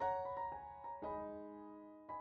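Soft solo piano background music: a chord at the start, a few quick notes after it, and a new, lower chord about a second in, each fading away.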